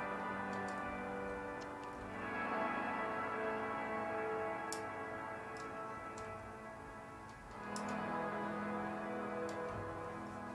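Dark Intervals' Guitars in Space "Guitars In The Distance" preset, a clean electric guitar sample patch, playing sustained ambient chords that swell in and change to new chords about two seconds in and again near eight seconds. Faint, irregular clicks sit over the chords.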